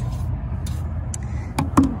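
A few short knocks, the loudest just before the end, as a wooden-backed horse brush is set down on a rubber-matted RV step, over a steady low rumble.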